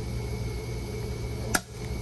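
Steady low hum and hiss of a running dialysis machine, with a single sharp click about one and a half seconds in.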